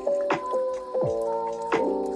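Soft lo-fi background music of sustained keyboard chords and melody, with two falling, drip-like blips on the beat.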